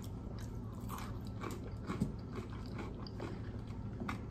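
Close-up chewing of crispy hash brown, a run of small irregular wet crunches and clicks with one sharper crunch about two seconds in.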